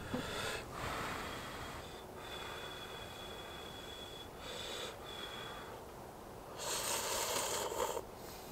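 Instant cup ramen noodles slurped from the chopsticks: breathy sucking sounds in the first half, then one loud, long slurp near the end.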